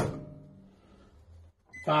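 Microwave oven door shut with a sharp thunk that rings briefly and dies away within about half a second, followed by a faint low hum.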